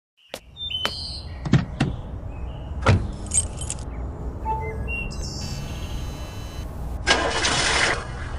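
Car sounds over a low steady rumble: several sharp clicks in the first three seconds and short electronic tones, then a loud hiss-like surge starting about seven seconds in.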